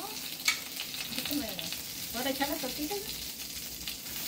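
Chicken pieces sizzling as they fry in oil in a skillet, a steady hiss, with a single light click about half a second in.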